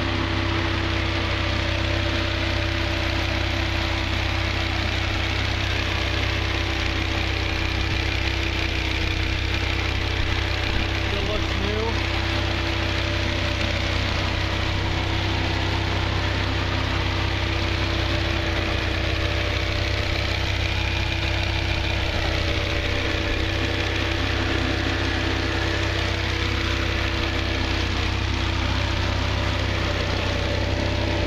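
Dodge Viper SRT10's 8.3-litre V10 engine idling steadily, a low, even hum that does not change.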